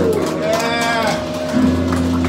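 Live band playing loud in a small club: a long bellowed vocal wail that rises and falls over sustained, ringing electric guitar and bass, with a new held note coming in near the end.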